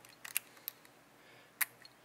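A few short, light clicks from fingers handling the advance plate of a GM HEI distributor. The sharpest click comes about a second and a half in.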